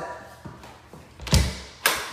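Closet door being opened by its knob: a heavy thud and then a sharp knock about half a second later.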